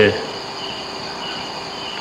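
Steady hiss of an old 1978 tape recording, with a faint high-pitched trill that comes and goes.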